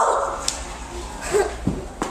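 A person's loud, drawn-out cry trailing off, followed by a few soft knocks and a brief murmur.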